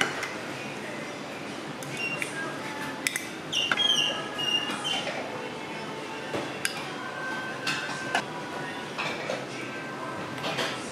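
Ceramic bowls and chopsticks clinking and knocking together as egg and toppings are tipped from small bowls into a rice bowl: a string of sharp clinks, a few ringing briefly, the busiest cluster a few seconds in, over steady restaurant background noise.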